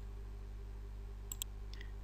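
Two quick computer mouse clicks about a second and a third in, with a fainter click just after, over a faint steady electrical hum.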